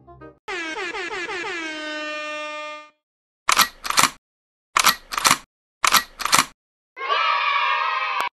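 Edited-in meme sound effects. A pitched tone slides down and then holds for about two seconds. After a short silence come three pairs of short air-horn blasts, and a dense, loud burst starts about a second before the end.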